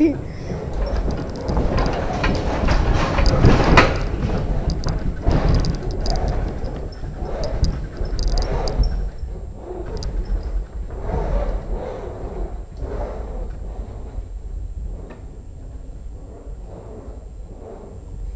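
Earthquake simulator room shaking: a deep rumble with knocking and rattling of the desks, chairs and fittings, strongest in the first few seconds and slowly dying away. It replays a strong, nearby earthquake, short and most violent at the start.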